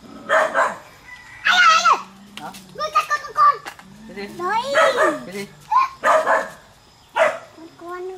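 A dog barking in short bursts, about six times, with voices calling between them.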